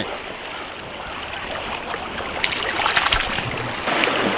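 Fast stream water running steadily, with a cluster of small water splashes and drips about two and a half to three and a half seconds in as a trout is handled in a landing net held in the water.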